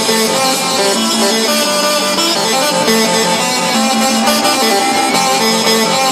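Loud fairground ride music from the Zamperla Powersurge's sound system, a melody of short held notes over a steady wash of sound.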